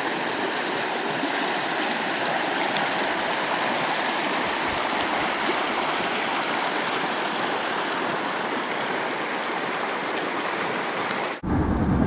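Mountain river rushing over rocks and small rapids: a steady, unbroken water noise that cuts off abruptly near the end.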